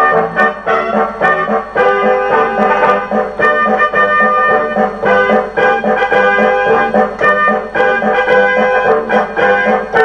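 Military parade march played by a brass band, trumpets and trombones over a steady march beat of about two strokes a second.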